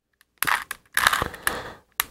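Rubik's cube being twisted by hand: quick runs of plastic clicking and scraping as the layers turn, in two bursts from about half a second in, with a single click at the very end.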